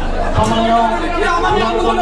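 Voices talking over one another in a large hall, with no other distinct sound.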